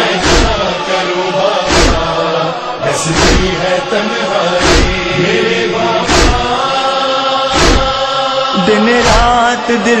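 Noha lament between verses: male voices chanting a slow, held refrain over a deep beat about every one and a half seconds, the rhythm of matam chest-beating, about seven beats in all. Near the end a solo voice comes in with a wavering sung line.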